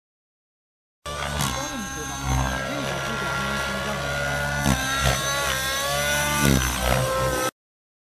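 GAUI NX7 radio-controlled helicopter in 3D flight: the drivetrain whines over a steady rotor hum, the whine rising and falling with the changing load of the manoeuvres. The sound starts abruptly about a second in and cuts off abruptly near the end.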